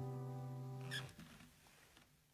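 Background music: a held chord fading out and stopping about a second in, leaving only faint low notes.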